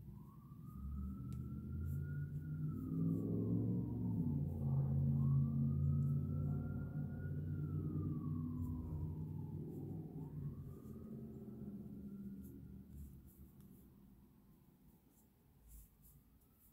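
A siren wailing, its pitch slowly rising and falling about once every five seconds, over a low rumble. It grows louder to a peak about five seconds in, then fades away.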